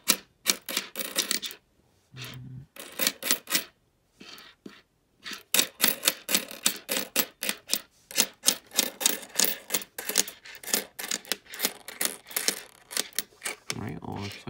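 Canadian nickels clinking and clattering against one another as a row from an opened coin roll is pushed and spread across a tabletop by hand: quick irregular runs of small metallic clicks, with a brief pause partway through.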